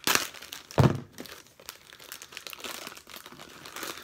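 Packaging of a Funko mystery mini crinkling and tearing as it is opened by hand. There is a sharp crackle at the start and another about a second in, then smaller crackles.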